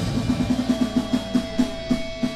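Live rock band's drummer playing a fast run of hits around the drum kit, spacing out toward the end, with a single held guitar tone coming in under it, as the song winds down.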